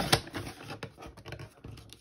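Card stock being handled and lined up on a sliding-blade paper trimmer: a sharp click just after the start, then light taps and rustling that fade away.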